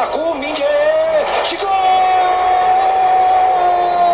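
A man shouting in celebration of a goal: a few short rising and falling cries, then one long call held on a single pitch for over two seconds.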